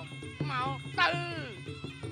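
Traditional Khmer boxing fight music: a sralai reed oboe plays sliding, bending phrases over drums.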